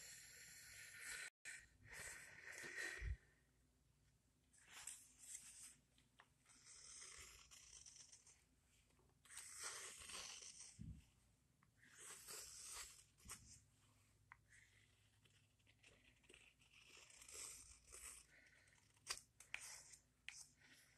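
Carving knife slicing shavings off the wooden handle of a small ladle: a series of short, faint cutting strokes, about a dozen, with pauses between them.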